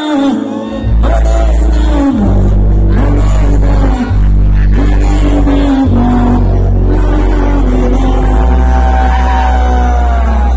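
Live band playing loud through a concert PA: deep, held bass notes that change pitch every two seconds or so, with a melody line bending above them.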